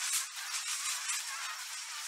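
Outro sound effect for an animated logo: a steady crackling, fizzing hiss with almost no low notes, like sparks burning.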